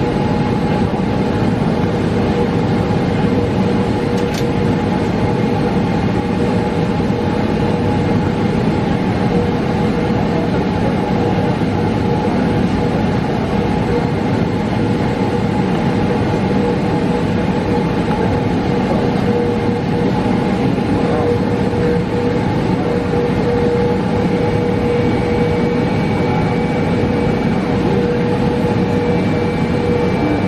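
Boeing 777 jet engines at taxi idle heard inside the cabin, with the rumble of the airliner rolling on its wheels. It is a steady, even roar carrying a constant hum, and a faint higher whine joins near the end.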